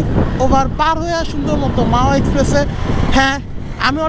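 A man talking, with the low running noise of a Suzuki Gixxer SF motorcycle and rushing air beneath his voice as it is ridden.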